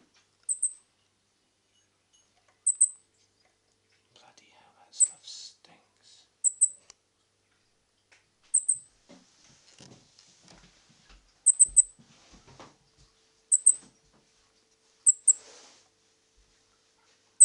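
Small bird chirping: short, high-pitched calls, mostly in quick pairs, repeated about every two seconds, with faint rustling between calls.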